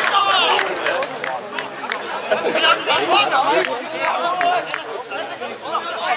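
Several indistinct voices of football players and spectators calling out and chatting at once, overlapping in short shouts.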